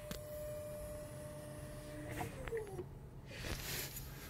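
Faint whine of the small electric motor of a pop-up head-up display raising its glass, with a click at the start. The whine winds down with a falling pitch about two seconds in.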